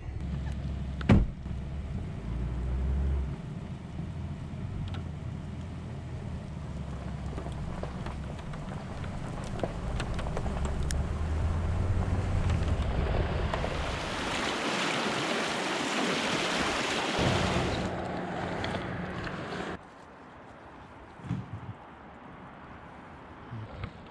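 Vehicle engine running with a low, steady hum while reversing slowly down a rough forest road, joined and then overtaken by a loud rushing noise. About twenty seconds in, the sound drops suddenly to a quieter outdoor background with a few light knocks.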